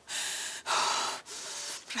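A woman breathing hard and audibly in distress: three heavy, gasping breaths of about half a second each.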